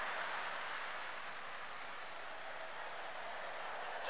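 A large theatre audience responding to a punchline with a steady wash of applause and laughter that eases off slightly before the comedian speaks again.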